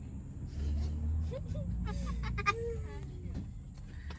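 A woman's faint voice, laughing and exclaiming in a few short rising and falling sounds, over a low rumble.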